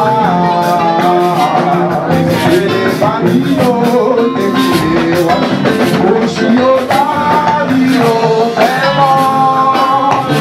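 Loud church worship music: several voices singing held, gliding lines together over a steady drum beat and instruments.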